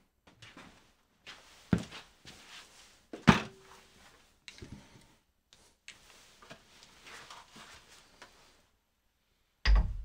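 Handling noise as a superclamp and ball-head camera mount is carried and worked: scattered knocks and rustles, with two sharp clacks about two and three seconds in, the second with a brief ring. A heavier thump comes just before the end.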